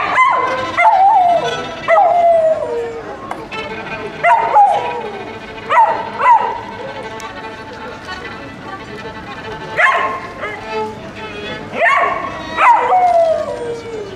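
Violin played with swooping slides: about nine sharp upward swoops, each falling away in a slower downward glide, in clusters over steadier bowed notes.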